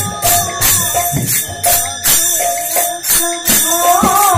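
Kirtan music: small hand cymbals clashing in a steady beat about twice a second, under a woman's sung melody line and a steady held note.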